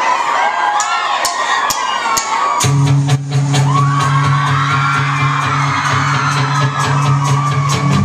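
Crowd screaming and cheering at a rock club, with four evenly spaced clicks; about two and a half seconds in, the full band comes in loud with electric guitar, bass and steady cymbal hits, the crowd still cheering over the music.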